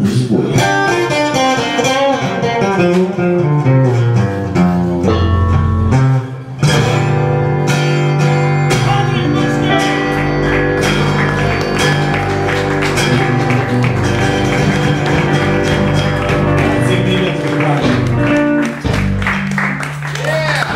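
Live blues band playing, with acoustic and electric guitars over electric bass. The music breaks off briefly about six seconds in, then the band comes back in.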